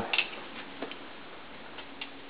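Faint footsteps on a hardwood floor: a soft tick about once a second over quiet room tone.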